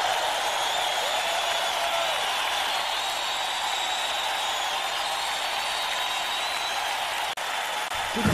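Audience applauding steadily between songs, with a momentary dropout near the end.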